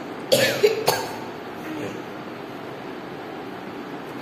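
A girl coughing: a quick run of about three coughs, a third of a second in and over within a second.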